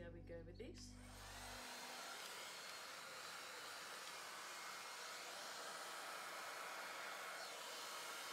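Hand-held hair dryer blowing steadily, coming in about a second in as guitar music fades out.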